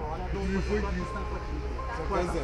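Several men's voices talking over one another, the words unclear, above a steady low rumble. A steady high tone sounds briefly twice in the second half.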